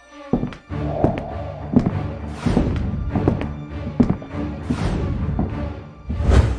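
Background music with a sustained low bass, starting about a third of a second in and punctuated by repeated heavy percussive hits.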